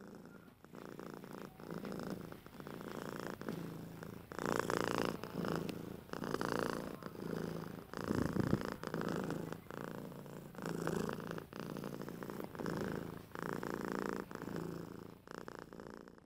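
A cat purring, rising and falling with each breath about every three-quarters of a second.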